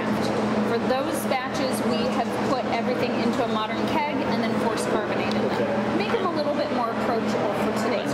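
Conversational speech, mainly a woman talking, over a steady low hum.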